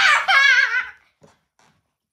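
A boy laughing loudly in a high, wavering voice, breaking off about a second in.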